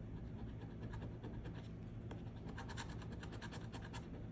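A coin scratching the coating off a scratch-off lottery ticket in rapid short strokes, growing busier over the last second and a half.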